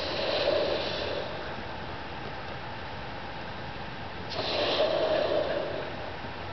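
A large balloon being blown up by mouth: two long puffs of breath rushing into it, one at the start and one about four seconds in, each lasting a second or so.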